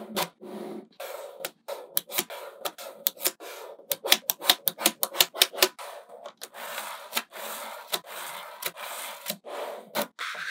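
Small magnetic balls clicking as they snap together under the fingers, in a run of sharp clicks that comes quickest in the middle, then a rubbing, rattling noise as strips of balls are rolled and pressed into place along the edge.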